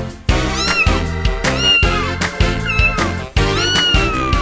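Cartoon cat meowing about four times, each meow rising then falling in pitch, the last one longer and starting near the end, over bright children's backing music with a steady beat.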